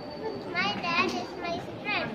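Young children's high-pitched voices: several short calls and chatter over a murmur of lower voices.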